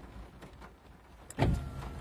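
A quiet pause with faint low noise inside a car cabin, then a sudden low thump and rumble about one and a half seconds in.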